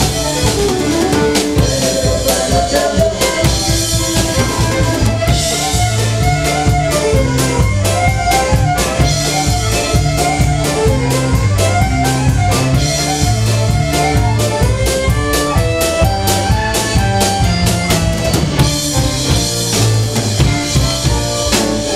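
Live country band playing an instrumental passage: a fiddle carries the melody over electric guitar, keyboard, bass notes and a steady drum-kit beat.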